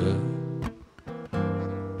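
Acoustic guitar strumming a chord that rings and fades, a brief near-silent gap about a second in, then another strummed chord left to ring: the accompaniment between sung lines of a bard song.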